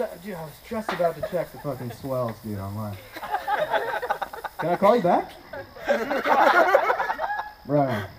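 Mostly a man's speech into a microphone, with some laughter mixed in.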